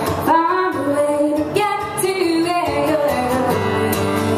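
A woman singing with her own strummed acoustic guitar, performed live. The sung phrase ends about three and a half seconds in, leaving the guitar chords ringing on.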